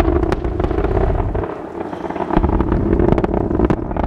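Distant low rumble of an Atlas V rocket's RD-180 first-stage engine as it climbs away, swelling and fading in waves with scattered crackles, mixed with wind buffeting the microphone.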